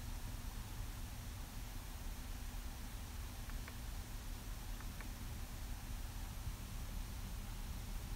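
Faint, steady low hum of the 2016 Jaguar XJL's supercharged 3.0-litre V6 idling, heard from inside the cabin under a light hiss. Two soft clicks about midway come from the centre-console drive-mode buttons being pressed.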